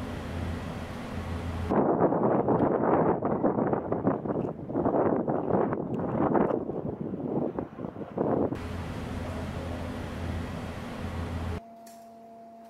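A steady low rumbling noise. About two seconds in it swells into a louder, rough rushing roar that lasts until about eight and a half seconds, then drops back to the low rumble, which cuts off suddenly just before the end.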